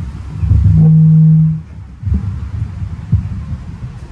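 A man's voice holding one steady hummed 'mmm' for under a second, starting about a second in, amid a few low rumbling thumps.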